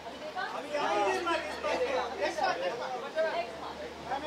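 Chatter: several voices talking and calling out over one another, with no one voice clear.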